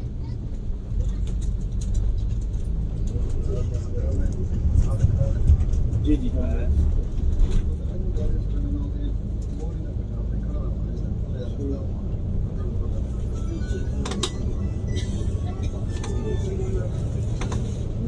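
Steady low drone of a Yutong Nova intercity coach's engine and tyres, heard from inside the cab while cruising at highway speed. Faint voices sit under it, and a few sharp clicks or rattles come near the end.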